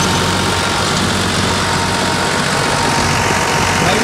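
John Deere 5310 tractor's three-cylinder diesel engine running steadily at low revs, an even chugging with no change in speed.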